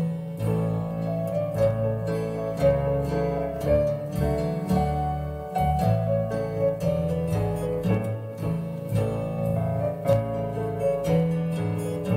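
Upright piano playing a gentle lullaby: a melody of single struck notes over held bass notes, without a break.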